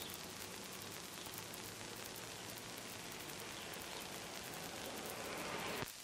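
Steady hiss with a fine, faint crackle running through it: the background noise of an old 1960s film or tape soundtrack, with no speech or other event. The hiss swells a little just before it drops away near the end.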